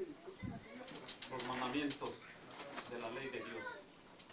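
A man's voice speaking in short phrases with pauses, quieter than the speech around it.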